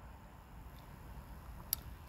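Quiet background with a faint low rumble, broken by one short sharp click near the end and a fainter tick before it.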